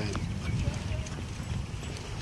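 Footsteps on asphalt, irregular and soft, over a steady low rumble.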